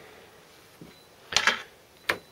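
Mostly quiet room tone, with one short clatter a little over a second in from something being handled on the workbench.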